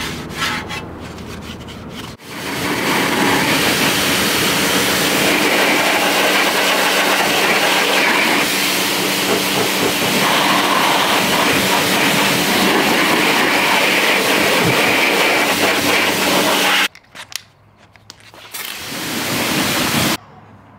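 Pressure washer spraying water onto a brake rotor and caliper: a loud steady hiss of the jet with a steady hum beneath. It cuts off a few seconds before the end and starts again briefly on a wheel. Before the spray starts, a detailing brush scrubs the caliper.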